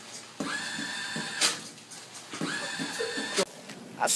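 Automatic paper towel dispenser motor whirring twice, about two seconds apart. Each run is a steady whine of about a second with quick ticking under it, and ends in a short sharp burst as it stops.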